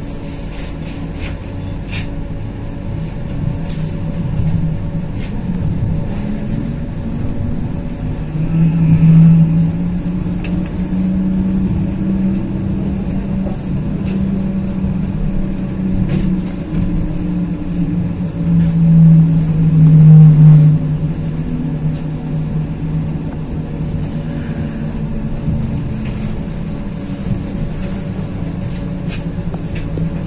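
Pesa Fokstrot (71-414) tram heard from inside while running between stops: a steady rumble of the car on the rails, with a motor tone that rises and falls in pitch and swells loudest about a third of the way in and again about two-thirds in.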